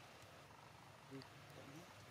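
Near silence, with a faint short call a little over a second in and a brief rising call just after.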